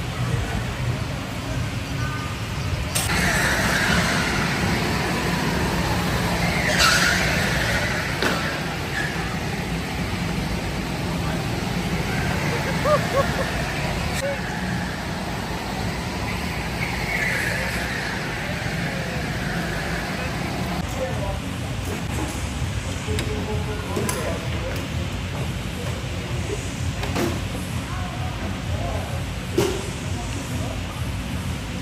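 Go-karts running laps on an indoor concrete track, with a steady low hum. Tyres squeal a few times, near the start and again about halfway through.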